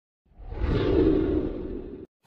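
A whoosh sound effect for a logo intro: it swells up out of silence about a quarter of a second in, is loudest around one second, then eases off and cuts off suddenly near the end.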